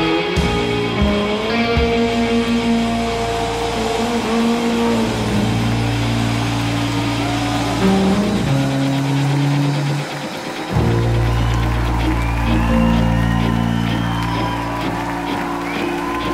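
Live rock band playing with electric guitar, bass and drums, built on long held bass notes. The lowest notes drop out briefly about ten seconds in, then come back.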